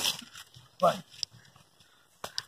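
Two short vocal cries, like grunts or shouts from a scuffle, about a second apart.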